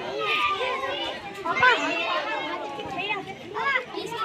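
Several children's voices talking and calling out over one another, none of it clear enough to make out as words.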